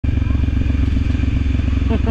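Motorcycle engine running steadily under the rider, a low even rumble of rapid firing pulses. A voice breaks in briefly near the end.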